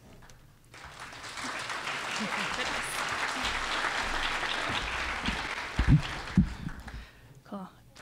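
Audience applause in a large room, starting about a second in and dying away near the end, with a couple of low thumps about six seconds in.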